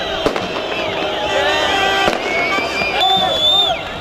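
Fireworks going off with a few sharp bangs over the shouting voices of a celebrating street crowd.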